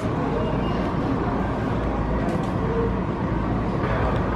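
Steady low rumble and hiss of background noise in a rail ticket office, with a faint voice briefly in the middle.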